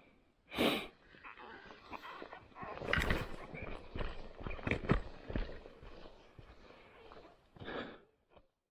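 Footsteps on a gravel road, with loud breaths close to the microphone about half a second in and again near the end.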